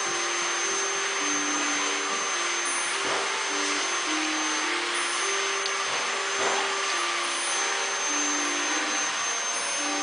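A steady, loud rushing noise with a thin high whine, like a running motor or fan, with a faint simple tune of short held notes going on underneath.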